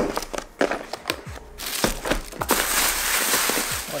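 Thin plastic takeout bag crinkling and rustling as white clamshell takeout containers are handled and slid out of it onto a counter: scattered sharp rustles and clicks at first, turning into a continuous dense crinkle from about halfway through.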